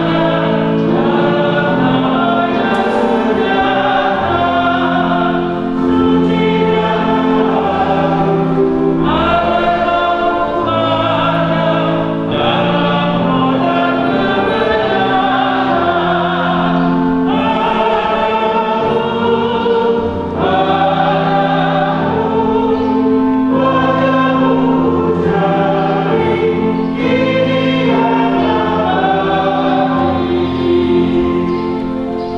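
A group of voices singing a hymn together in harmony over long held chords from an accompanying instrument, in phrases a few seconds long.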